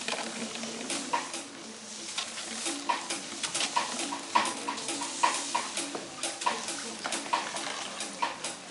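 Push brooms swept and knocked on a hard sports-hall floor: a scratchy brushing with irregular sharp knocks, one or two a second.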